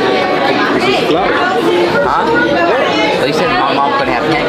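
Voices talking over the steady chatter of a busy restaurant dining room.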